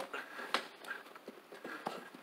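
Scattered light knocks and clicks of a floor buffer and its carpet pad being handled on carpet, with no steady motor sound.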